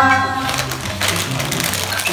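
Plastic packet of instant miso soup crinkling and rustling as it is pulled open by hand, a run of quick crackles over background music.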